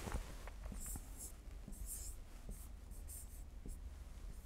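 Faint scratching of a pen writing on an interactive whiteboard screen: a handful of short strokes as a word is written.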